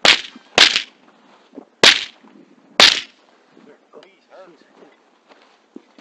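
Four rifle shots fired in quick, uneven succession within about three seconds, each a sharp crack with a short tail. Faint voices follow near the end.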